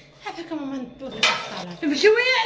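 A woman talking in Moroccan Arabic, with a brief sharp clink a little past a second in.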